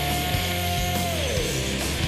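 Rock band playing at full volume with drums, bass and guitar; a long held high note slides down about one and a half seconds in.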